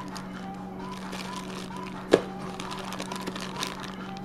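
Quiet handling of camera accessory cables in plastic bags, with one sharp click about two seconds in. Faint music and a steady low hum sit underneath.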